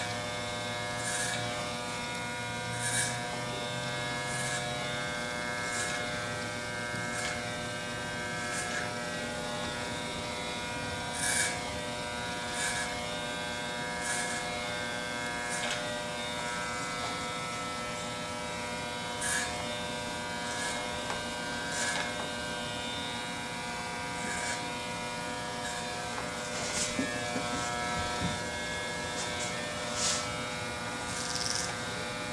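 Electric barber hair clippers with a plastic guard attached, running with a steady buzz. Brief hissing strokes come every second or two as the blades are pushed up through the hair.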